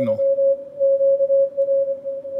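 Morse code (CW) signal from a weak Summits on the Air station on the 30-meter band, received on a Yaesu FTdx5000MP transceiver: a single steady beep keyed on and off over faint band hiss. The signal barely moves the S-meter yet stands clear of the noise through the radio's narrow filtering.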